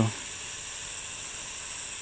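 Powered surgical drill running steadily with a high whine and hiss, drilling a bicortical screw hole through the drill guide of a distal clavicle plate.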